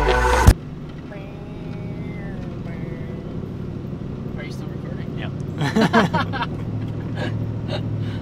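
Intro music cuts off abruptly about half a second in, leaving the steady engine and road hum of a pickup truck heard from inside its moving cab. A brief burst of voice comes around six seconds in.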